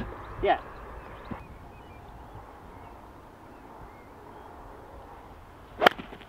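A golf club striking the ball from rough grass: one sharp, very brief crack just before the end, after a few seconds of quiet outdoor background.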